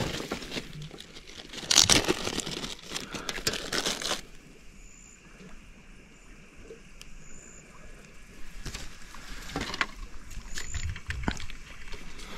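Close rustling and crinkling of hands handling fishing gear and bait, in irregular bursts over the first four seconds and again over the last three, with a quieter stretch between. A few short, high peeps sound in the quiet middle and near the end.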